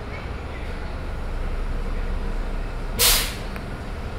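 An electric shuttle bus standing at a stop, heard from inside the cabin: a low steady hum, then about three seconds in a short, loud hiss of compressed air released from the bus's air system.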